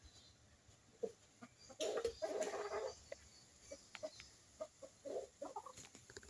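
Chickens clucking in short, scattered calls, with a denser run of calling lasting about a second, about two seconds in.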